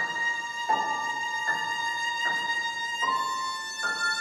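Violin playing a slow melody, with a new sustained note about every three-quarters of a second.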